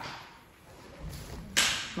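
A woman's quick, sharp intake of breath through the mouth about one and a half seconds in, after a near-quiet pause.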